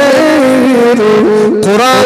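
A man singing a slow, melodic devotional line into a microphone, holding notes that bend and waver between pitches.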